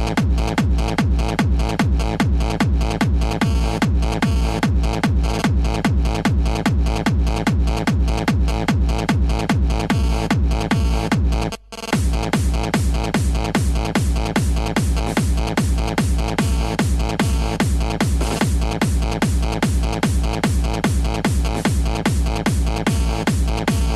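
Techno played on a DJ's turntables, a steady kick-drum beat driving the track. The music cuts out for a split second just before the middle, then the beat comes straight back in.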